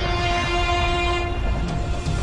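Logo-intro sound design: a loud, held, horn-like chord over a deep rumble.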